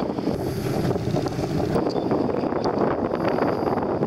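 Wind buffeting the microphone over the steady rushing noise of a boat under way on open water.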